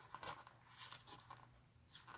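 Faint rustling and scratching of toy packaging and small plastic figures being handled, in a few short scrapes.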